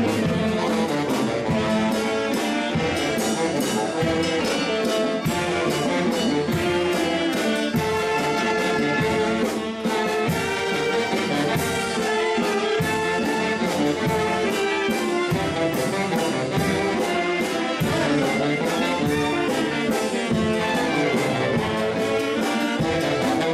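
Dance music from a band of brass and reed instruments playing over a steady beat.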